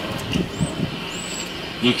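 Steady car-interior noise, with faint talk.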